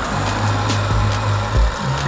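A skateboard wheel, a Bones Street Tech Formula wheel on Bones Reds bearings, spun by hand: a steady whirring hiss from the free-spinning bearing that fades near the end. Background music with a steady bass beat plays underneath.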